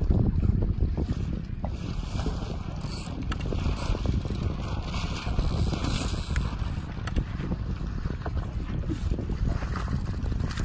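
Wind buffeting the microphone in a low, steady rumble, with a few faint ticks over it.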